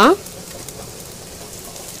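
Diced capsicum, carrot and onion frying in oil in a kadai: a faint, steady sizzle.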